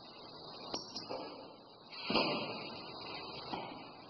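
Pneumatic cylinders and solenoid valves on a Festo training bench cycling through an automatic sequence: sharp clicks of valves switching and cylinders stroking, with a louder clack and a rush of exhaust air about two seconds in, over a steady high hiss.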